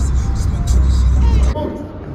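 Steady low rumble of a car driving, heard from inside the cabin, cut off suddenly about one and a half seconds in. Quieter room sound with men's voices follows.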